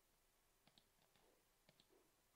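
Near silence with a few faint computer mouse clicks, two quick pairs about a second apart.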